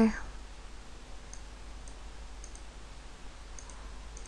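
A few faint computer mouse clicks, some in quick pairs, over a steady low hum and hiss.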